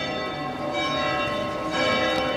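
Bells ringing: several overlapping tones that keep sounding, with a fresh strike near the end.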